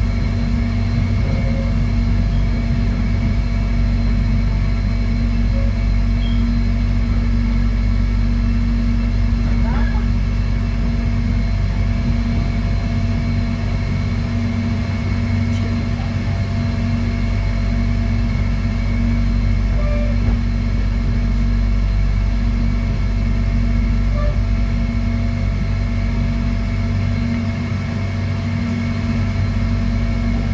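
Airport rail link electric train heard from inside the carriage while running at steady speed: a constant low rumble from wheels on track, with several steady humming tones layered over it.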